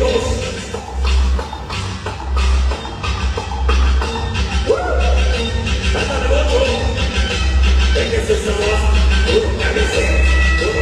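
Loud Latin dance music played over a sonidero's sound system, with a heavy, pulsing bass beat.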